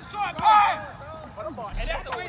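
Men's voices calling out across an open field, one shout about half a second in and more calls near the end, with a low rumble of wind on the microphone at the end.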